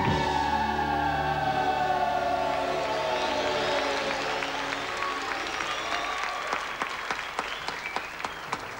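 Dance-routine backing music ending on a long falling tone over the first few seconds, then an audience applauding, the clapping growing as the music fades.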